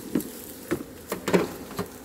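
Honeybees buzzing around an open hive, with several light crunching taps from footsteps on bark mulch.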